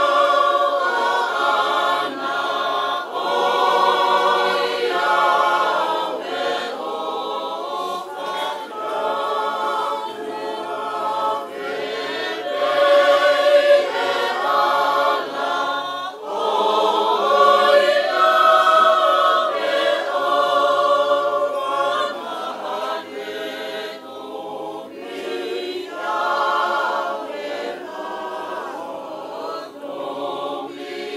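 A choir singing a Tongan song in harmony, with long held notes.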